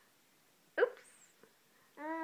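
A toddler's single short, sharp burst of laughter a little under a second in.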